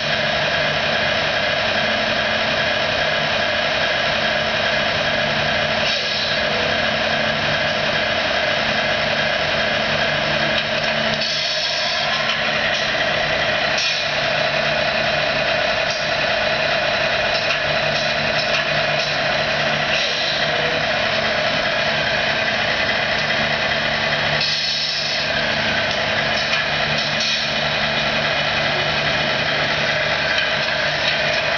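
Steady diesel-truck idle from a scale RC truck's engine sound unit, running unbroken. Twice, at about 11 and 25 seconds in, the drone briefly drops and a short hiss like an air-brake release is heard.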